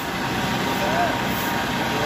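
Diesel engine of a Hino box truck running steadily as the truck moves off slowly, with a person's voice briefly over it.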